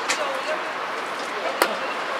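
A blitz chess move being played: two sharp clicks of a piece and the chess clock, the louder about a second and a half in, over a low murmur of background voices.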